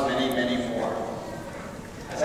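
A man speaking over a microphone in a large, echoing church. A drawn-out word trails off within the first second, and the level sinks through a short pause.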